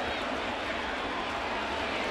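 Steady background murmur of a ballpark crowd, with no distinct calls or impacts.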